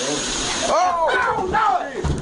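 Excited voices in a phone-recorded clip. For the first part they sit over a steady hiss, which stops suddenly under a second in.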